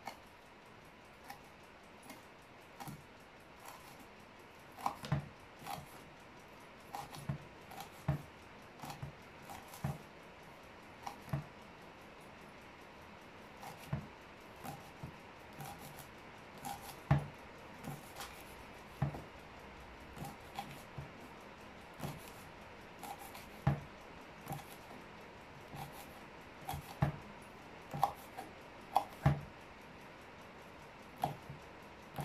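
Small knife chopping fresh rosemary on a wooden cutting board: irregular taps of the blade on the board, about one or two a second.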